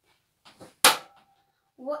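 A thrown dart striking the dartboard with one sharp smack a little under a second in, followed by a short ringing tone as it settles.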